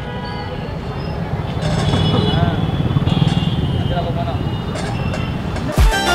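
Busy street market ambience: a steady low rumble of traffic under indistinct voices. Background music comes in just before the end.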